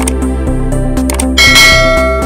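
Electronic outro music with a steady beat, a click sound effect at the start as the subscribe button is pressed, then a bright bell chime about one and a half seconds in, the notification-bell sound effect, ringing on as it fades.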